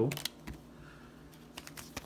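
Thin clear plastic card sleeve crackling in short, scattered clicks as it is handled and a trading card is slipped into it.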